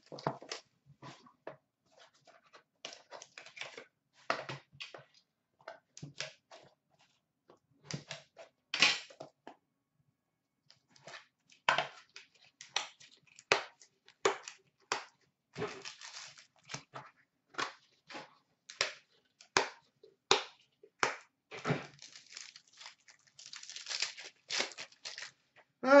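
Cellophane shrink wrap crinkling and tearing in short crackles as it is cut and peeled off a sealed hockey card box, with clicks from the box being opened and handled.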